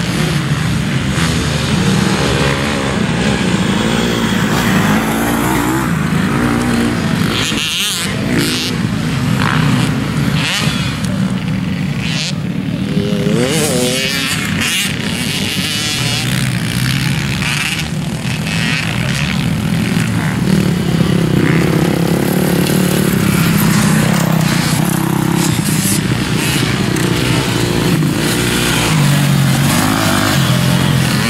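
Motocross bike engines racing around a dirt track, several bikes at once, the pitch rising and falling as the riders rev, shift and back off.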